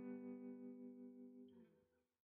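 Background music: a held guitar chord rings on and slowly dies away, fading out to silence near the end.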